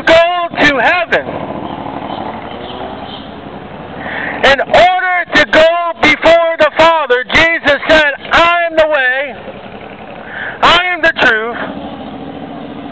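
A man preaching in loud, shouted phrases at close range, loud enough to distort. A steady vehicle engine and traffic noise fills the pauses, at about one to four seconds in and again just before ten seconds.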